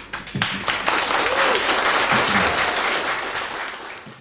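Live audience applauding at the end of a song, the clapping building up within the first second and tapering off near the end.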